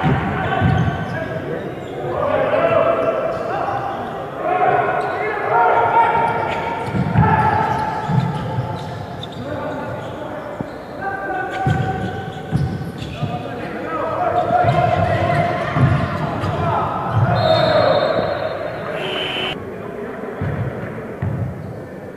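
Basketball bouncing on an indoor court during a game, repeated thuds, with players' shouts echoing around a large gym.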